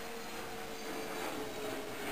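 Steady background hiss with a faint low hum: room tone, with no distinct event.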